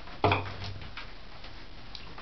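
A sharp knock about a quarter-second in, then a few faint ticks: ferrets moving in shallow bathwater, their paws splashing and bumping the tub.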